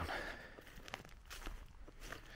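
Footsteps through dry, overgrown grass and dead weeds, several steps at walking pace with a light rustle between them.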